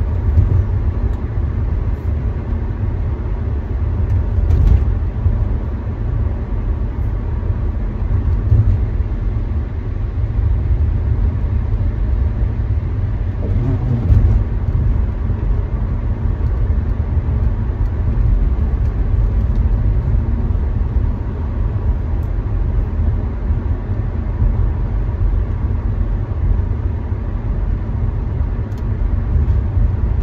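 Car driving, its steady low road and engine rumble heard from inside the cabin, swelling briefly about halfway through.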